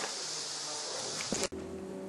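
Steady high-pitched drone of insects buzzing in summer grass and trees. It cuts off suddenly about one and a half seconds in, leaving a quiet room with a faint hum.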